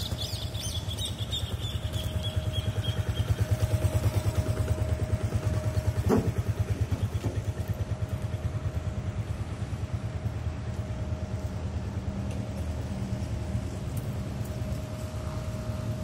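Honda Biz 125 ES single-cylinder four-stroke engine idling steadily, with a single knock about six seconds in.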